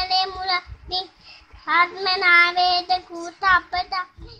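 A young boy chanting a Buddhist verse in a sing-song voice, holding long notes on one steady pitch with short syllables between.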